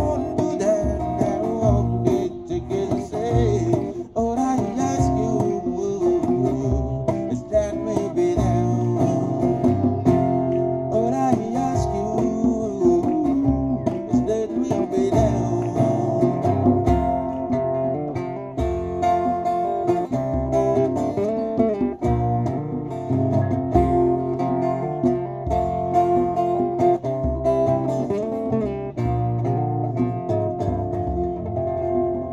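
Live acoustic music: two acoustic guitars playing chords and melody, with a djembe keeping a steady beat underneath.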